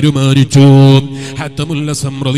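A man's voice reciting in a chanted, sung style, drawing out long held notes, the loudest held from about half a second to one second in.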